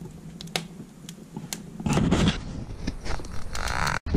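Wood fire crackling in a wood stove with its door open: scattered sharp pops, with a louder burst of rushing noise about halfway through.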